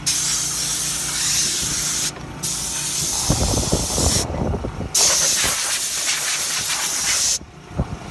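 Compressed-air blow gun hissing in three long blasts with short breaks between them, blowing dust out of a car's rear seat and floor area. A low rumble runs under the second blast, and the air cuts off shortly before the end.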